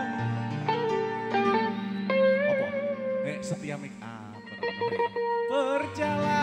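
A live band playing the instrumental intro of a song, with a lead guitar melody that bends and wavers over a steady bass line.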